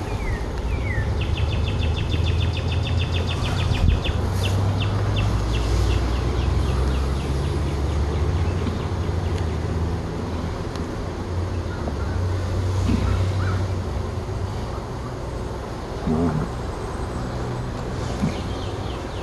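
Honeybees humming steadily around an open hive as its frames are worked. A bird gives a rapid trill of high chirps a second or so in, which slows into separate notes for a couple of seconds. There is a short thump near the end.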